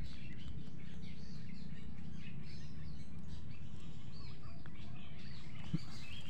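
Small birds chirping and twittering, many short calls scattered throughout, over a steady low background noise.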